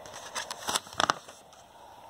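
A picture book's paper page being turned: three short rustles and crackles within the first second or so.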